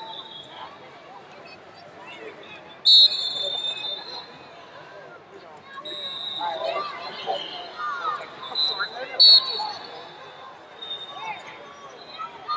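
Sports referee's whistle blasts, a loud one about three seconds in and another about nine seconds in, with fainter whistles between, over the chatter and shouts of a crowded arena.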